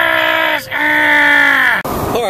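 A person's voice in two long drawn-out cries, the second about a second long, each sliding down in pitch at the end.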